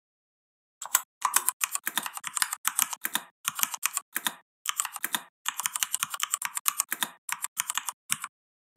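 Typing on a computer keyboard: a fast run of key clicks starting about a second in, broken by a few short pauses, with the spacebar registering again among the keystrokes.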